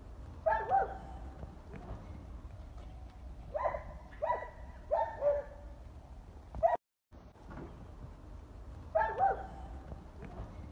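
Short bark-like animal calls: one about half a second in, a run of four between three and a half and five and a half seconds, one more just before a brief dropout, and a pair about nine seconds in.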